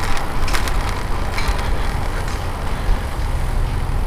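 Steady wind rumble on a helmet-mounted camera while cycling through street traffic, with the noise of cars alongside; a couple of short clicks about half a second in.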